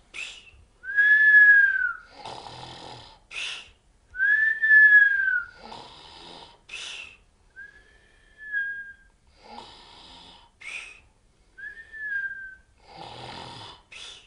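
A man snoring in a comic rhythm, about four times: a rasping snore on each breath in, then a whistle that rises and falls on the breath out. The first two whistles are the loudest.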